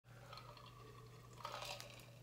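Faint drinking sounds, sips and swallows from a stainless steel tumbler, with a few soft clicks in the second half, over a steady low hum.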